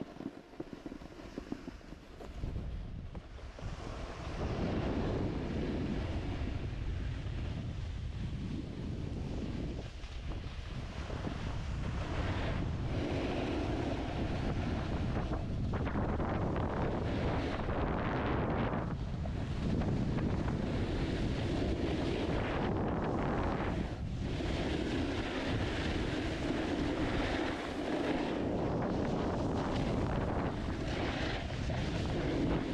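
Wind rushing over the camera microphone and a snowboard's base and edges scraping across groomed snow while riding downhill. It builds over the first few seconds as speed picks up, then runs on steadily, dipping and swelling in places.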